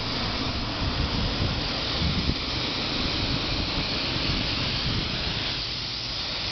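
Compressed-air paint spray gun hissing steadily as it sprays paint onto concrete, with an uneven low rumble underneath.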